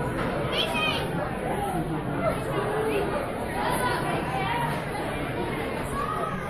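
Steady background chatter of many diners talking at once around a restaurant dining room.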